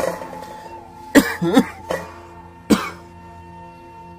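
A man coughing: two coughs close together about a second in, then a third about a second later, over background music with long held notes.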